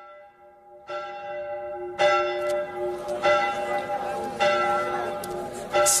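A church bell tolling, about one stroke a second, each stroke ringing on into the next. The strokes grow louder from about two seconds in.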